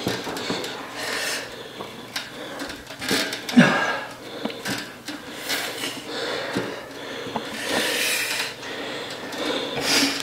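A set of seated calf raises on a seated calf raise machine: rasping, rubbing noises that swell and fade about every two seconds with the reps, with one sharper, louder sound about three and a half seconds in.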